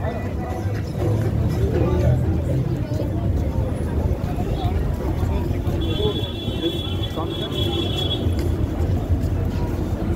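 Busy city street noise: a steady low traffic rumble with passers-by walking and talking. About six seconds in, a high steady squeal rings for about two seconds.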